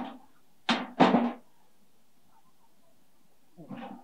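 Two loud machete chops about a third of a second apart on something lying on the ground.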